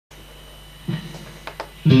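Electric guitar through an amplifier: a steady low hum, a short note about a second in, two pick clicks, then a loud riff starting just before the end.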